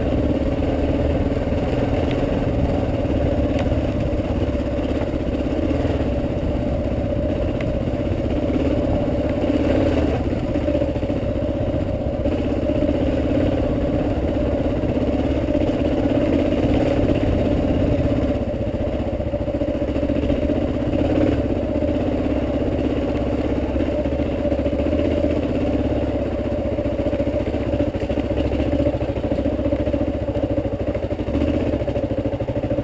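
Dual-sport motorcycle engine running steadily while riding a rough dirt trail, its note holding fairly even with only small shifts.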